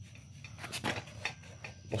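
A few faint clicks and light scrapes from a Stihl string trimmer's gearbox being handled and worked loose on its drive-shaft tube.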